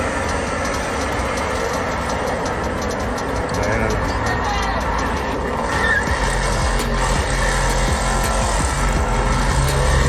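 A car's engine revving hard as it does a burnout, wheels spinning on the road, getting louder from about six seconds in.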